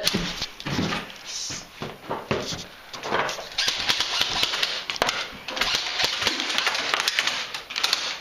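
Rustling and scuffing of a person moving about on wooden boards, with irregular sharp clicks and knocks throughout and a heavier run of rustling from about three seconds in.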